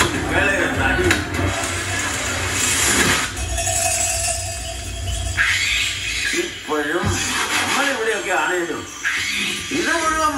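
Movie trailer soundtrack: dramatic music with a voice narrating in Malayalam, the speech clearest in the last few seconds.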